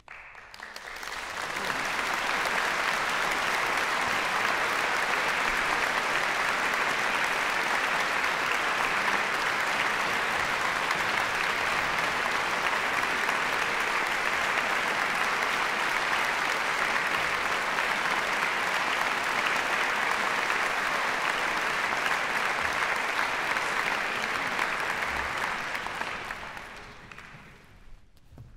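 Audience applause at the end of a piece of music. It swells over the first two seconds, holds steady, then dies away near the end.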